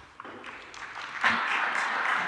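Applause breaking out a little over a second in, a dense, steady patter of many hands clapping.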